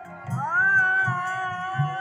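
Kirtan music: a high voice slides up into a long held, wavering note about a quarter second in, over the low beats of a khol drum.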